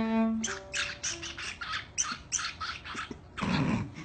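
A pet bird perched on a violinist's shoulder gives a quick run of short raspy squawks just after a held violin note stops, then one louder, rougher squawk a little after three seconds.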